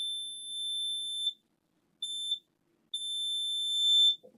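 Digital multimeter's continuity beeper giving a steady high beep while its probes sit across a laptop motherboard's shorted main power rail, reading under 2 ohms. The beep cuts off about a second in, then sounds twice more as the probe contact makes and breaks, the second time for about a second.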